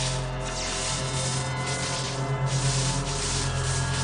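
Film sound effects of electrical discharge: a dense hissing rush that swells and dips every second or so. Under it runs a steady low drone from the score.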